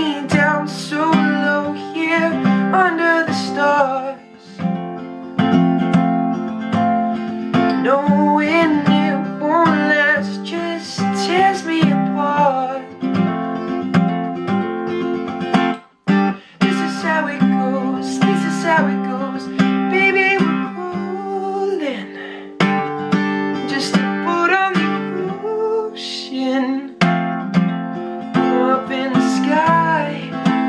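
Acoustic guitar with a capo, strummed and picked, with a male voice singing over it. The sound drops out for a moment about halfway through, then the playing and singing resume.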